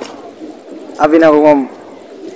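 A single drawn-out, wavering coo-like vocal sound, about half a second long, starting about a second in.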